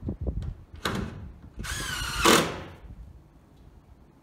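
A power drill running in two short bursts: a brief one about a second in, then a longer whine whose pitch dips and rises again. A few light knocks come first.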